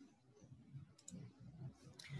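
Near silence with one faint double click of a computer mouse about a second in, in a small quiet room.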